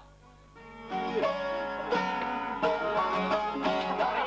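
Çifteli, the two-stringed Albanian long-necked lute, strummed in a lively rhythm in a folk-song interlude without singing. The instrument comes in about a second in after a brief hush.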